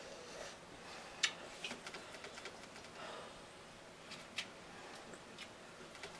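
Quiet mouth sounds of a person chewing a bite of breaded tofu: soft breaths and a few small sharp clicks, the clearest about a second in and again past four seconds.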